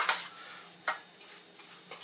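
Hands mixing raw chopped pork in a stainless steel bowl, faint, with one sharp click against the metal bowl about a second in.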